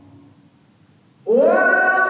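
A man's solo Quran recitation in melodic chant: a short pause, then about a second in the voice comes back in, sliding up into a long held note.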